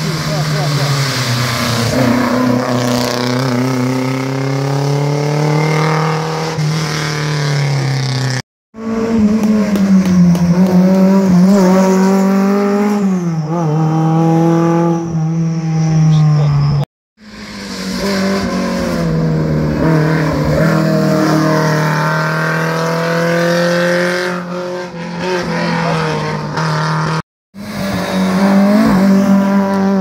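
Competition car engine driven hard up a hill climb, its pitch rising under acceleration and falling on lifts and gear changes, over and over. The sound cuts out completely for an instant three times.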